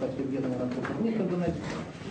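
A man speaking slowly with drawn-out, hesitant syllables.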